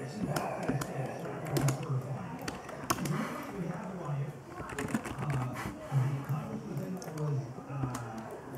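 Muffled talk-radio speech from an AM broadcast playing in a small room, with irregular computer keyboard typing clicks over it.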